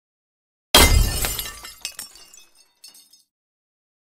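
A glass-shattering sound effect: one sudden loud crash under a second in, followed by scattered tinkling fragments that die away by about three seconds.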